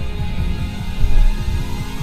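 Electronic music playing through the 2021 Hyundai Santa Fe's 12-speaker Harman Kardon sound system, heard from inside the cabin on the move. Held synth notes sit over a pulsing bass.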